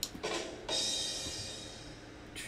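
A rimshot drum sting, 'ba-dum-tss', played from a Discord soundboard: a couple of quick drum hits, then a cymbal crash a little over half a second in that rings and slowly fades.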